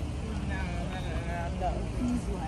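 Steady low rumble of street traffic with faint voices talking in the background.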